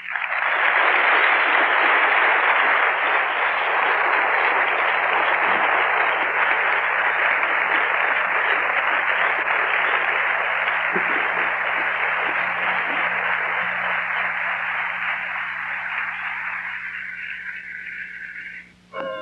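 A lecture audience applauding. It breaks out all at once and holds steady, then slowly dies away near the end.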